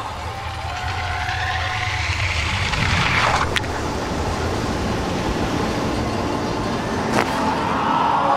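Ski jumping skis running down an ice-track inrun: a low rumble and a hiss that rises in pitch as speed builds, ending in a sharp clack at takeoff about three and a half seconds in. A rush of air follows during the flight, then a second sharp slap as the skis land about seven seconds in.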